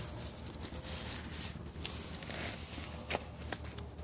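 Rustling of tomato plant leaves and stems being handled, with phone handling noise and a couple of light clicks about three seconds in.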